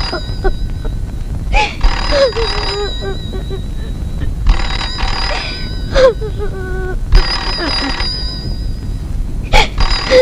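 A woman crying: loud sobs and wails in bursts of about a second, each wavering and falling in pitch, five or six times.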